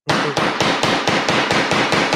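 Wooden gavel banged rapidly and repeatedly, about seven sharp blows a second.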